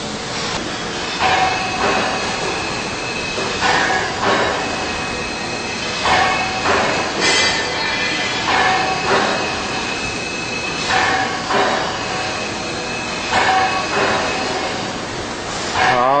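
Jeffer JF-200 carbide tool grinder's wheel running, with a grinding sound that swells in pairs about every two and a half seconds as a carbide cutter is worked back and forth against the wheel.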